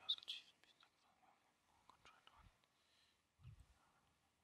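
Near silence with faint whispering: the priest's quiet prayer at the altar. A soft low thump comes about three and a half seconds in.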